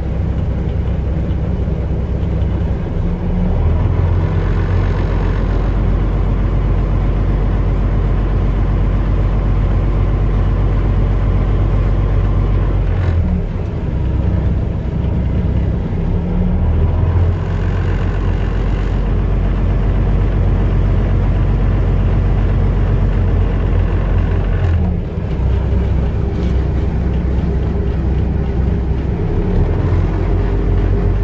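Paccar MX-13 diesel engine of a Peterbilt 579 idling steadily at about 600 rpm, heard from inside the cab.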